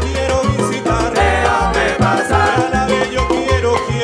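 Live salsa band playing an instrumental passage, with a bass line of repeated low notes under horns, guitars and piano, and steady percussion strokes.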